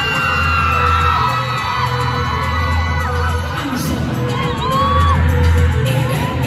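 Loud pop dance track played over a concert PA, with a heavy bass pulse, and fans in the audience screaming and whooping over it.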